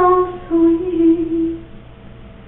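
A woman singing to herself with no other voice: a held note that ends just after the start, then a slightly lower note held for about a second before it stops.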